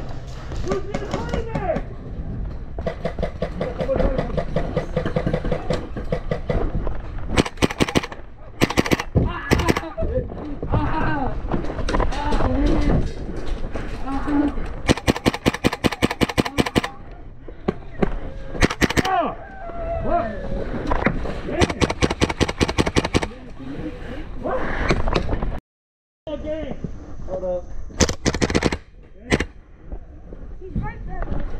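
Airsoft rifle, a KWA AKG-74M gas-blowback run on HPA, firing short bursts and one long fast full-auto string about halfway through, loud and close. Players shout over the shooting.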